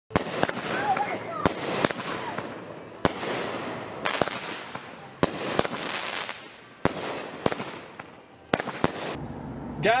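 Aerial fireworks bursting: about a dozen sharp bangs at uneven intervals, each trailed by a fading crackle, stopping shortly before the end.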